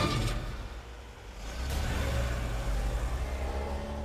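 Car engine revving as the car pulls away: a loud burst at the start, then a low steady rumble building about a second and a half in.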